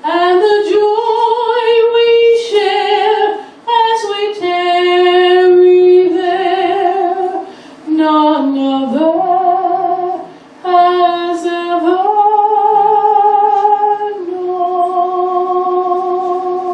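A woman singing a hymn solo and unaccompanied, in several phrases of long held notes with vibrato and short pauses for breath between them; the last phrase ends on a long held note.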